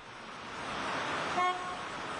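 City street traffic: a steady rush of passing cars that swells over the first second, with a short car-horn toot about one and a half seconds in.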